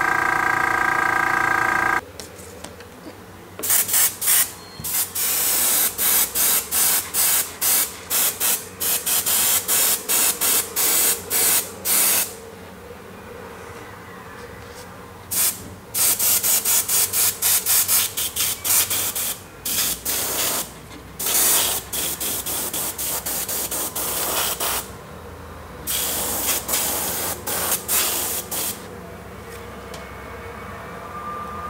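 Airbrush spraying paint onto a crankbait blank in many short hissing bursts, in quick runs with a few brief pauses: light, gentle passes laying down a thin coat. A steady hum sounds for the first two seconds, before the spraying starts.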